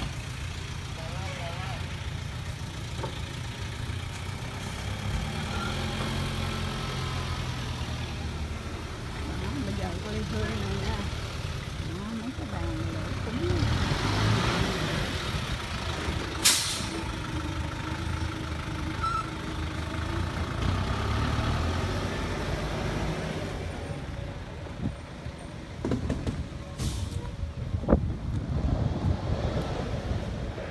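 Outdoor background: a continuous, uneven low rumble with faint voices of people in the distance, broken by a sharp click about halfway through and another near the end.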